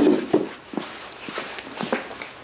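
A handful of footsteps, irregularly spaced, the first and loudest about a third of a second in.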